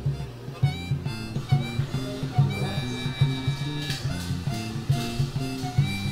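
Background music: a steady, regular low note pattern with long held high notes over it.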